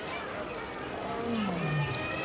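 Zoo animal calls over a dense, noisy background, with one call falling in pitch about a second and a half in.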